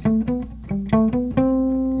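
Acoustic steel-string guitar playing single notes palm-muted: about seven quick picked notes in a stepwise melodic line, each cut short, with the last note held longer.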